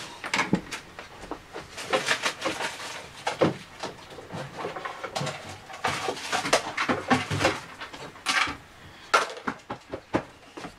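Irregular knocks, clatter and rustling of craft supplies being handled while a glitter tidy tray is fetched and set down.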